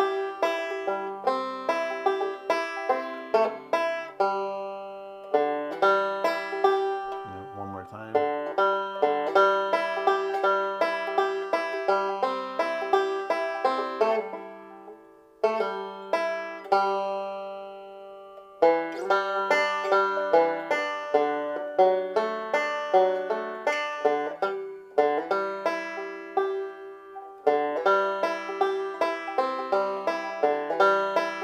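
Five-string banjo picked fingerstyle, playing a bluegrass backup part as a continuous run of plucked notes and rolls. The run breaks off briefly a few times, about a sixth of the way in and again about halfway through, before the phrases pick up again.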